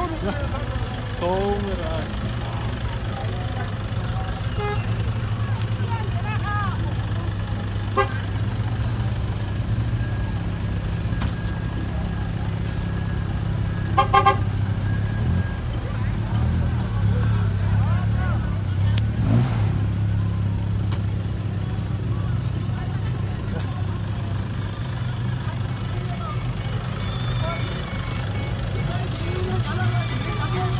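A car horn tooting several short beeps in quick succession about halfway through, over the steady low hum of vehicle engines running at low speed.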